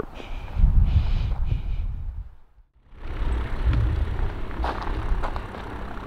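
A light aircraft's engine running at a distance, under a low rumble of wind on the microphone. The sound drops out briefly about two and a half seconds in, then the rumble carries on.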